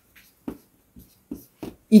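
Chalk writing on a chalkboard: a few short, separate strokes and taps.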